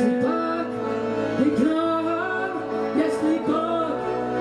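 Band music: a melody line that slides and bends in pitch over steady sustained chords.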